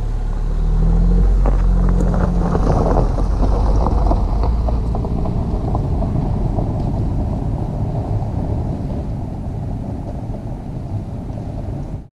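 Jeep Renegade with its 1.0-litre three-cylinder turbo petrol engine driving off over a leaf-strewn forest track. There is a low engine rumble, with tyres crackling over leaves and grit, loudest in the first few seconds. The sound then slowly fades as the car moves away.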